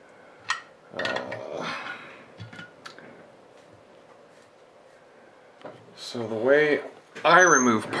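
A sharp click and a short clatter of small tools or meter leads handled on a workbench, then a man's voice near the end.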